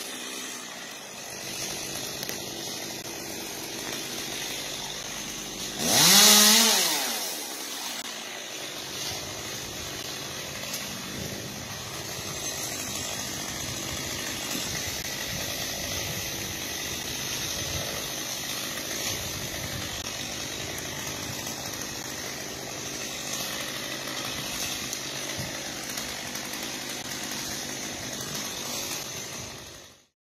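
Chainsaw in a tree top, revving once loudly about six seconds in, its pitch rising and then falling, over a steady hiss that lasts throughout.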